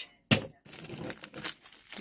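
Plastic bead packaging being handled: a sharp crackle about a third of a second in, then softer irregular crinkling and rustling.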